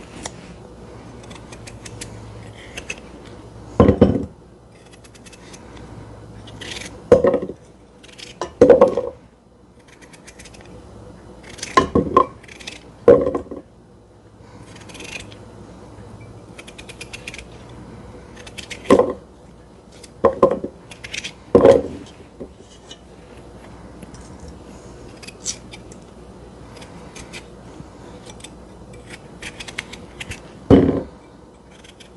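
Chunks of raw potato dropping into a nearly empty metal cooking pot, each landing with a short ringing clunk, about eight times at irregular intervals. Fainter clicks of a knife cutting through the potato fill the gaps.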